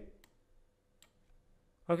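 Near-silent room tone with two faint computer-mouse clicks, the clearer one about a second in, between a man's spoken words at the start and end.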